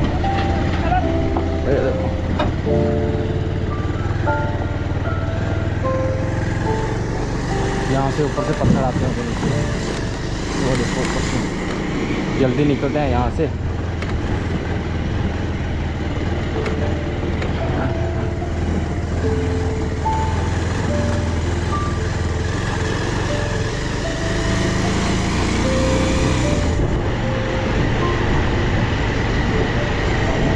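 Motorcycle engine running steadily at low speed on a rough dirt track, with background music carrying a stepping melody over it.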